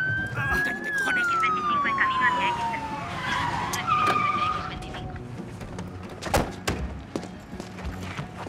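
Police car siren wail that rises to a peak about a second in, then winds down in pitch and dies away over the next couple of seconds. A single sharp knock follows about six seconds in.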